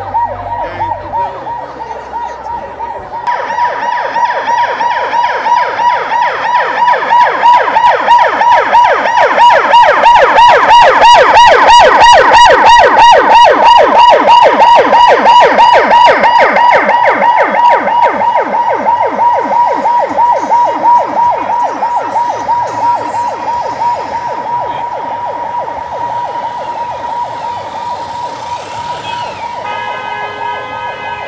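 Vehicle siren sounding a fast, rapidly repeating warble over a steady tone, swelling louder toward the middle and then fading.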